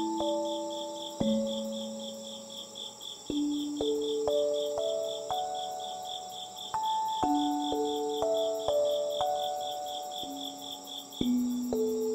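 Crickets chirping: a steady high trill plus a rapid pulsing chirp that stops about three-quarters of the way through. Under them runs slow, gentle background music of soft single notes that ring and fade.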